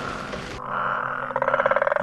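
A chorus of many frogs croaking: a rapid, rattling pulse that grows louder in the second half.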